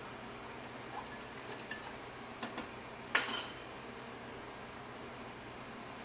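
Light clinks of a metal spoon against a saucepan and plate as sauce is stirred and spooned out, with one sharper, ringing clink about three seconds in.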